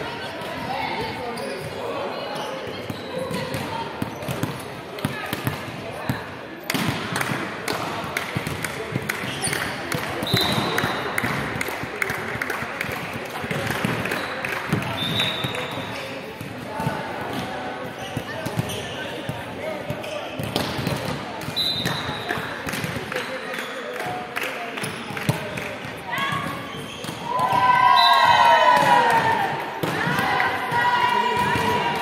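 Indoor volleyball play in a large sports hall: players' voices calling over repeated thuds of the volleyball bouncing and being struck. A burst of louder shouting comes from the players near the end.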